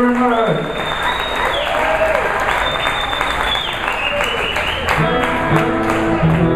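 Audience applauding as the band's last held chord dies away about half a second in, with two long high whistles over the clapping. Near the end electric guitar and bass start playing again.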